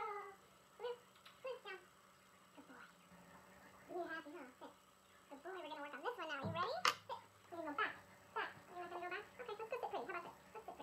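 Queensland heeler puppies whining and yipping in short, high, wavering calls over and over, busiest in the middle of the stretch, with one sharp click about seven seconds in.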